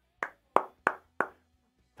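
A man clapping his hands four times at an even pace, about three claps a second.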